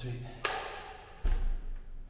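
A louvred bathroom door being pushed open: a sharp knock about half a second in, then a heavy, low thud about a second later.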